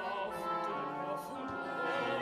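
Contemporary opera music: a mezzo-soprano aria with orchestra, on sustained, held notes.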